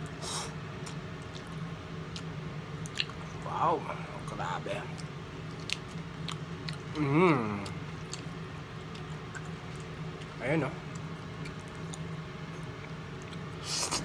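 A person eating spaghetti with chopsticks: quiet chewing with small wet clicks, broken by about four short hums from the eater's voice. A steady low hum runs underneath.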